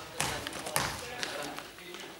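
A basketball bounced on a gym floor, a sharp knock roughly every half second, three or four times.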